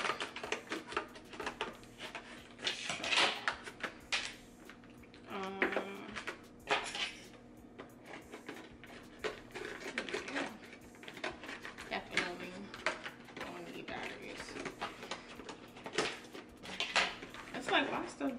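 Handling noise from a boxed, battery-powered air freshener being pried at and fiddled with, a device that is hard to open: repeated small clicks, taps and rustles, with a short hummed voice sound about five and a half seconds in.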